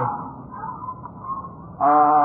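Low background hiss and room noise between a man's spoken phrases. His voice trails off just after the start and resumes near the end.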